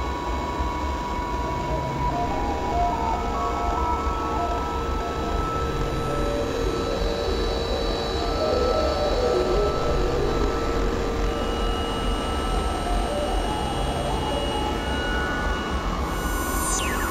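Experimental electronic drone music: a dense, steady synthesizer noise wash with several held tones and a low throb that comes back every few seconds.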